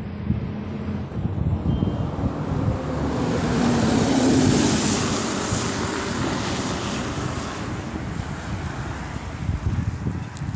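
Wind buffeting the microphone, with a rushing swell that builds to a peak about halfway through and then slowly fades.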